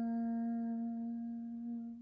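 A woman's voice holding one long, steady sung note, the closing note of a devotional chant, fading out at the end.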